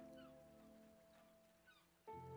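Very quiet background music: a held note fading away, with faint short calls repeating and thinning out over it.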